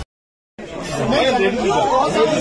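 A brief dead silence, then a crowd of people talking over one another, several voices at once in a jostling scrum.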